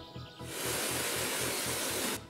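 Steady rushing-water noise of a waterfall, fading in about half a second in, over quiet background music.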